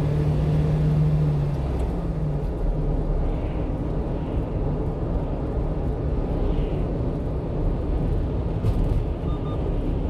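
Steady engine and road noise of a 1-ton truck driving on a city road, heard from inside the cab; a low engine drone stands out for the first two seconds or so, then fades into the general rumble.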